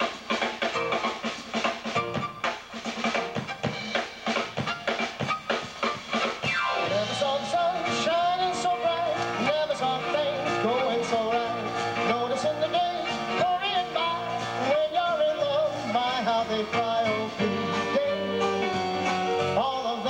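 Live small band with drum kit, guitar and bass playing a tune. The drums lead with steady strokes for the first six seconds or so, then a held, wavering lead melody comes in over the band.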